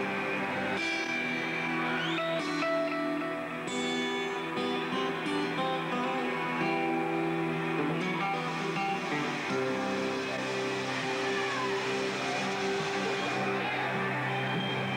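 Amplified acoustic guitar strumming chords, with the notes ringing on: the instrumental opening of a song, before the vocal comes in.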